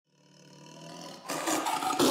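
Center-console boat running at speed: a steady engine drone fades in, then about a second in a louder rush of wind and spray takes over.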